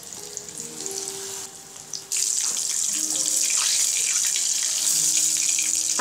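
Battered Bombay duck fish frying in hot oil in a shallow pan: a quiet crackle that becomes a much louder, steady sizzle about two seconds in. Background music with sustained notes plays underneath.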